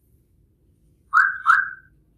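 Two short, high chirps about half a second apart, each rising slightly in pitch, the second a little longer.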